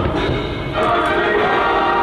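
A choir singing sustained notes with instrumental backing: the patriotic concert soundtrack of a fireworks show.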